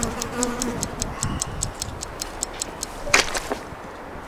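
Fast, even ticking like a clock, about six ticks a second, building suspense. It stops shortly before a single sharp hit just after three seconds in.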